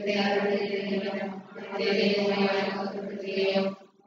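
A voice intoning in a steady, chant-like recitation: two long, held phrases with a short break about a second and a half in.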